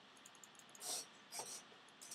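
Faint computer-mouse clicks, several in quick succession and one more later, as a button is clicked repeatedly. There is a short breathy puff about a second in.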